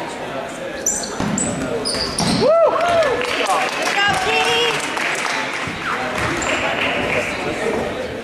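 Basketball bouncing on a gym's hardwood floor amid spectators' chatter in a large, echoing gym. About two and a half seconds in, voices rise and fall in pitch.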